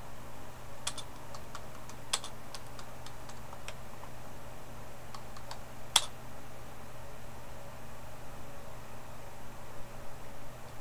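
Typing on a computer keyboard: irregular key clicks through the first six seconds or so, the loudest about six seconds in, then a pause with few keystrokes. A steady low hum runs underneath.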